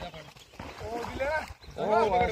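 Men's voices talking, indistinct, with a louder voice coming in near the end, over a low uneven rumble.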